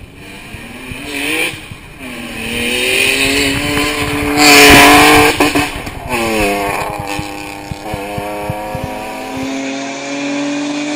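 2011 Honda Odyssey minivan's V6 engine run hard uphill at full throttle, its pitch climbing and dropping back at each gear change, loudest as it passes about halfway through. The sound breaks off abruptly a few times between short takes.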